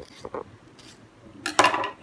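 A kitchen knife cutting a mango with faint soft ticks, then a short cluster of sharp metallic clicks about a second and a half in as the steel knife meets the stone countertop.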